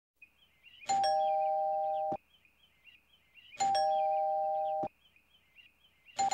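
A two-tone ding-dong doorbell chime rung twice. Each time a high note is joined by a lower one, both held for about a second before cutting off suddenly.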